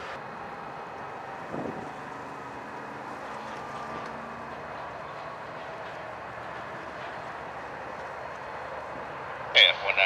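Steady low running noise of a diesel freight train some way off, with no horn. Near the end a two-way radio voice breaks in loudly.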